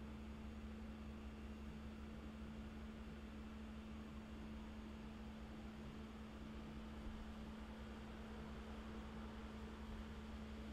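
Room tone: a steady low electrical hum with faint hiss, unchanging throughout.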